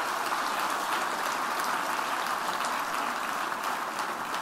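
Audience applause, a steady even clatter of many hands clapping.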